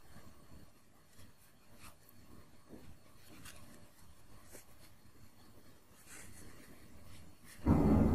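Faint rustling and soft scratching of yarn and a metal yarn needle being worked through crocheted cotton fabric by hand, with a few light ticks.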